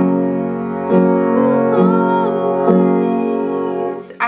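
Yamaha piano playing a G-flat major chord, G flat, B flat and D flat in the right hand over G flat and D flat in the left. The chord is struck four times, about a second apart, and rings on between strikes.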